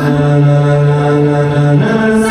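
Music over the hall's sound system: one long held low note with many overtones, which steps up to a higher note near the end.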